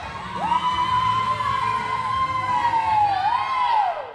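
A long, high-pitched whooping cheer from the audience: one sustained 'woo' that slides up at the start, holds with a slight waver, lifts once more and then falls away near the end, over a low hall rumble.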